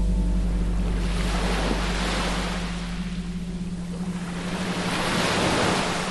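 Small waves breaking and washing up a sandy beach, the surf swelling twice, over a steady low hum.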